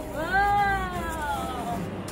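A single long, wordless vocal note from a person's voice, rising a little and then sliding slowly down in pitch, held for most of two seconds.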